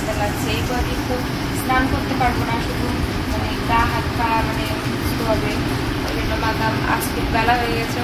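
A woman talking softly in short phrases over a steady low background rumble.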